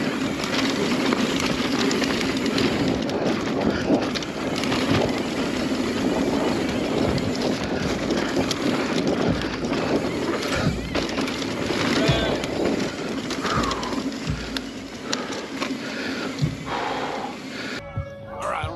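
Mountain bike riding fast down a dirt trail, heard from a camera on its handlebars: tyre noise on dirt with constant rattling and clattering of the bike, and wind on the microphone. The ride eases off a little in the last few seconds.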